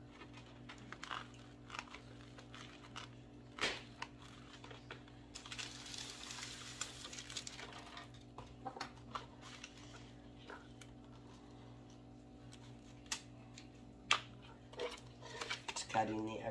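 Hands handling craft materials on a work table: scattered light taps and knocks, with a few seconds of rustling starting a little after five seconds in, over a steady low hum.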